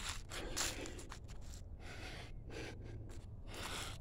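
Faint, irregular footsteps and rustling on grass and dry fallen leaves.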